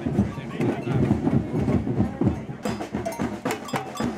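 Street protest drumming: a crowd of demonstrators with drums beating among their voices. About two and a half seconds in, crisper, quicker strikes of several marching drums played with sticks take over.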